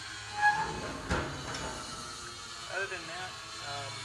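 Steel door of a trailer smoker's vertical cooking chamber being swung shut: a short squeak about half a second in, then a metal clank with a brief ring about a second in.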